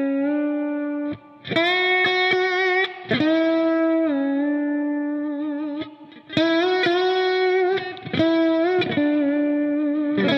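Electric lap steel guitar played with a steel bar through an amp: a slow melody of sustained, ringing notes with short slides into the pitches. It is improvised around the root using only the 1, 2, 3 and 7 scale degrees, with brief breaks about a second in and about six seconds in.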